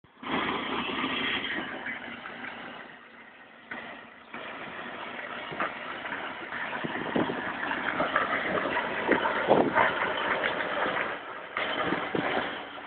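Pink Cadillac ride-on toy car driving over asphalt: its battery-powered drive and plastic wheels rolling on the pavement make a steady rough noise, with scattered knocks and rattles, quieter for a moment around the third second.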